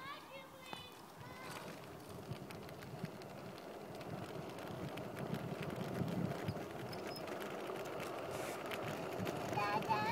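Light footsteps on asphalt with a low outdoor rustle, growing slowly louder toward the end.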